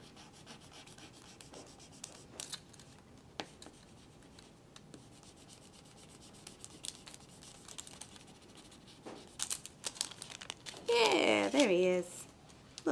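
A pen rubbing back and forth over paper, pressing a graphite sketch through onto the sheet beneath: faint scratching with light paper rustling. A woman's voice comes in near the end.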